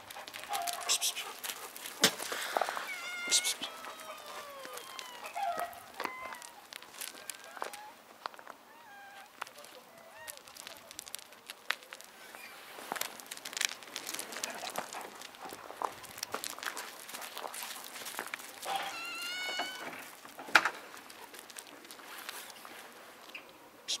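Domestic cats meowing a few times, with a longer, clearer meow near the end, among scattered crunches and clicks from steps on loose gravel.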